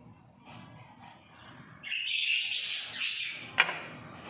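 Pet parrots squawking and chattering for about a second and a half, starting about two seconds in, with a single sharp click near the end.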